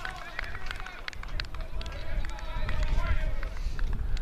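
Open-air cricket ground ambience after a wicket: faint, distant voices of players on the field, over a steady low rumble with a few scattered sharp clicks.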